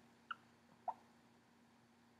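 Near silence with a faint steady hum, broken by two short faint chirps about half a second apart, the second lower in pitch than the first.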